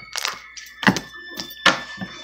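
Homemade pink slime slapped down by hand onto a tabletop: three sharp smacks, roughly three-quarters of a second apart.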